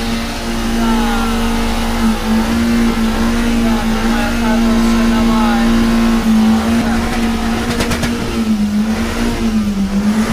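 A Kia car's engine held at high revs with the accelerator pressed down, a steady drone that dips briefly twice near the end.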